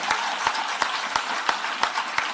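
A small audience applauding: many hands clapping in a steady patter.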